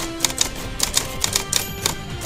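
News-channel intro music with a typewriter sound effect: a quick run of key clicks, about four or five a second, as a tagline is typed out on screen.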